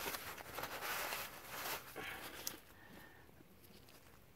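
Paper towel in a gloved hand rubbing and rustling against the oil filter mounting face of a Yanmar YM1820D engine, wiping off old gasket residue so the new filter will seal. The wiping dies away after about two and a half seconds.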